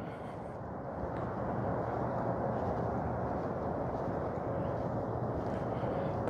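Steady outdoor background noise, an even low rush with no distinct events, growing a little louder about a second in.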